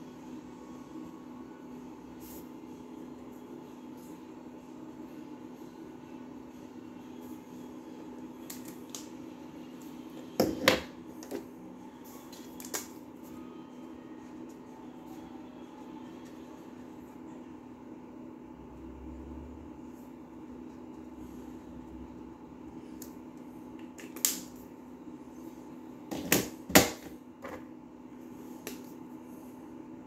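KingArt mini marker caps being pulled off and snapped back on as markers are swapped: a few sharp clicks about ten seconds in and again a cluster near the end, over a steady low hum in the room.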